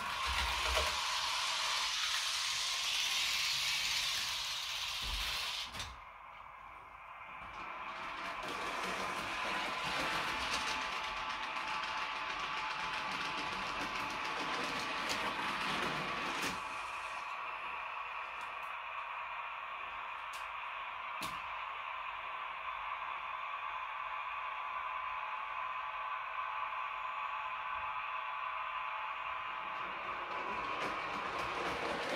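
H0 scale model train running on the layout: a steady electric motor whine with wheels rolling on the track, louder and noisier in the first few seconds. A few sharp clicks come in the second half.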